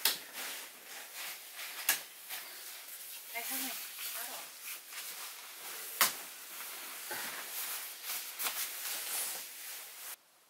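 Rustling and knocking as a person climbs up onto a wooden loft bed and settles onto a sleeping bag. There are sharp knocks near the start, about two seconds in and about six seconds in, the last the loudest, and a brief voice about three and a half seconds in.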